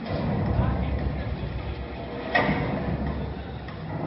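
Indistinct voices over a low, steady rumble, with one brief sharper sound a little past the middle.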